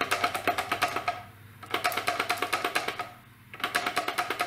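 A loose, unmounted part rattling inside a 50 W LED UV flood light's metal housing as the light is shaken, in fast clicking runs broken by two short pauses. The rattle is the sign of an internal component left free-floating instead of being fastened down.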